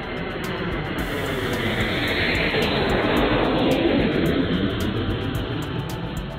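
Jet aircraft passing by: a rushing roar that swells, peaks about three to four seconds in with its pitch dropping as it passes, then fades away.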